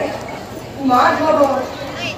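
Sattriya performance sound: a voice chanting over hand strokes on khol drums, with the voice loudest about a second in.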